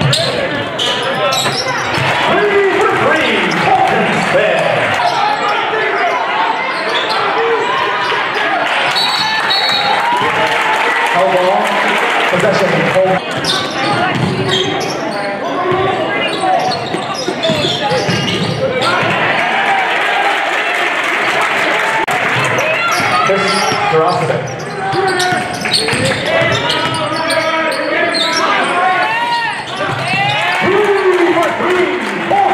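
Basketball bouncing on a hardwood gym floor during live play, amid indistinct calls and voices of players and spectators.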